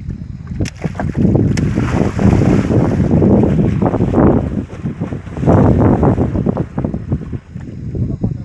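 Loud rumbling and rustling noise on the microphone in uneven swells, from the camera being carried and rubbed while its holder moves in the dark.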